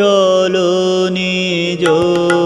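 A male singer holding one long, steady sung note in a Bengali devotional song (Brahmo sangeet), over instrumental accompaniment. The note breaks off briefly near the end.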